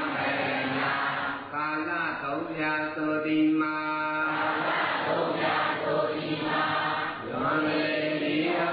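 Voices chanting a Buddhist recitation together, with long held notes near the middle.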